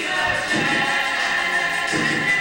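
Music with choir-like singing, the voices holding long notes.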